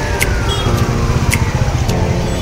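Road traffic rumble from a busy street, with a long, steadily falling whistle-like tone gliding down through it and short sharp ticks about once a second.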